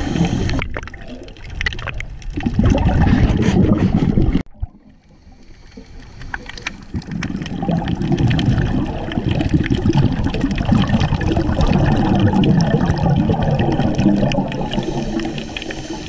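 Underwater rushing and gurgling of water and air bubbles, as picked up by a diver's camera. It cuts out abruptly about four seconds in, then swells back up and runs on steadily.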